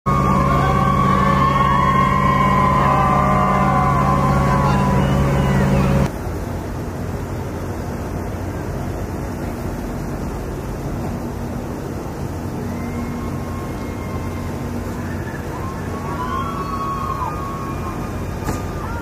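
Low, steady drone of ships' engines and machinery in a harbour, with wavering, gliding high-pitched calls over it. About six seconds in the level drops abruptly to a quieter hum, and a few more wavering calls come near the end.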